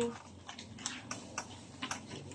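A few faint, separate clicks and light taps against a quiet background.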